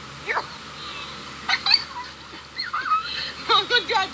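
Small dog yipping and whimpering in short high calls, about four of them spaced roughly a second apart.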